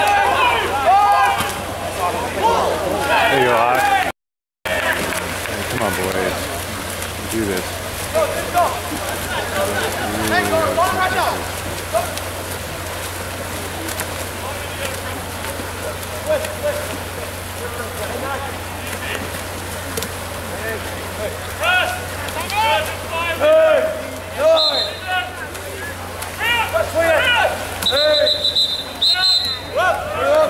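Scattered shouts and calls from water polo players and spectators over a steady low hum, with short high whistle blasts twice near the end. The sound drops out completely for a moment about four seconds in.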